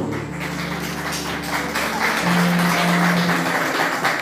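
Audience applauding over background music with held low notes that step up about halfway through.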